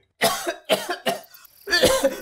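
A cartoon character's voice-acted coughing: three short coughs in the first second.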